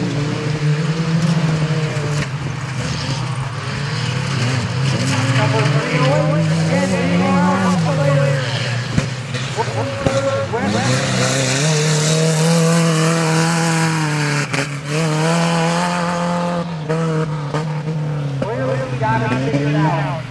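Engines of compact pickup trucks racing on a dirt track, their pitch climbing as they accelerate and dropping as they back off for the turns, with several long pulls.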